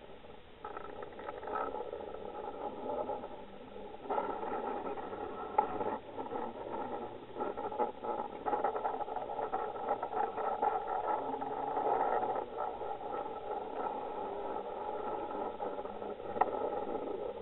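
Muffled underwater noise picked up through a camera's waterproof housing: a steady hum holding several faint tones, with scattered small knocks and clicks.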